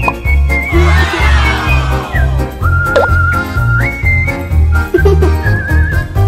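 Cheerful background music: a whistled melody over a bouncing bass line, with a shimmering run of falling notes about a second in.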